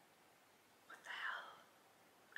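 A woman whispering or breathing out a brief unvoiced word about a second in, with near silence either side.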